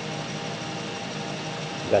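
Altair 8800b computer's cooling fan running with a steady whir and a faint hum.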